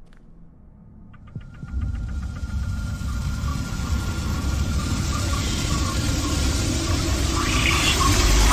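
Film sound effect of magical golden flames flaring up: a quick run of small ticks, then a rushing noise that builds steadily louder.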